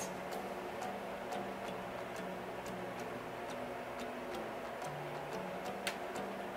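Quiet background music with a steady ticking beat, about two ticks a second, over soft sustained tones that change pitch partway through.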